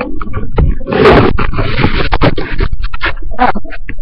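Loud scraping, rubbing and knocking handling noise on a computer's built-in microphone as the computer is carried and swung around, with many sharp knocks.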